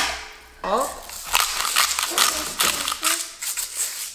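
Salt shaken from a shaker into a saucepan of sauce: a run of quick, sharp rattling clicks lasting about three seconds.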